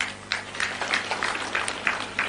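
Scattered clapping from a crowd, a string of uneven hand claps.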